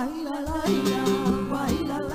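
Flamenco song: women's voices singing an ornamented, wavering cante line over acoustic guitar, with the music filling out about half a second in and a steady beat running under it.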